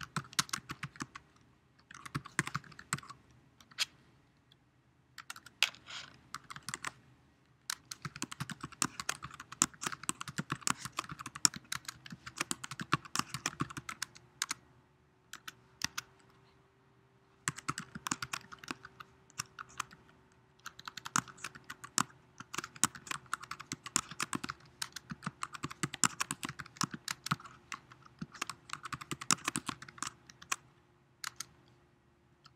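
Typing on a computer keyboard: quick runs of key clicks broken by short pauses of a second or two.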